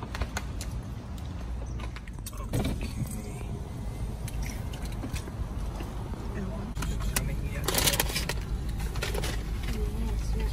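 Steady low rumble of a car with scattered clicks and rattles. Near the end comes a burst of rustling and clattering as a drink carrier and food are handled.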